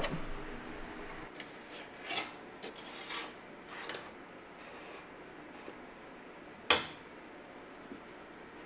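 A wire coat hanger and coax cable rubbing and scraping as they are pulled through a grommet, in a few short scrapes, then one sharp click near the end, the loudest sound.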